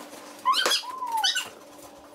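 A person's high-pitched squeal, sweeping quickly up in pitch, dipping, then sweeping up again. Two sharp pops from the toy ball poppers cut through it, one about two-thirds of a second in and one near a second and a half.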